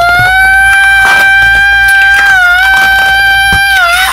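A man's high falsetto cartoon voice holding one long, steady note for almost four seconds, dipping slightly in pitch a little past halfway: a drawn-out sound of satisfaction.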